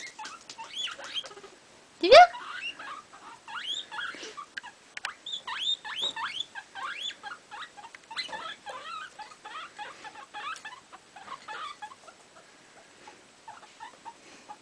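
A guinea pig chattering: a long run of short, high squeaks, several a second, that thins out near the end. One much louder rising call stands out about two seconds in.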